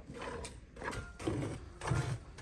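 Cow being milked by hand into a metal pail: short, rhythmic squirts of milk into the foamy milk, about two a second.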